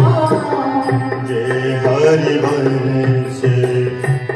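Group devotional singing of a hymn from a Hindi scripture, voices held on long notes over a harmonium, with a dholak drum keeping time.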